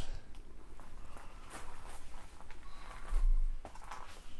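Footsteps and the rustle of a hand-held camera being moved, with faint scattered ticks and a low bump about three seconds in.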